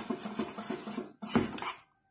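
Metal spoon stirring a thick mixture of melting soap and milk in a small stainless steel saucepan, scraping and clinking against the pan's sides and bottom. There is a louder scrape about a second and a half in, and the sound cuts off abruptly just before the end.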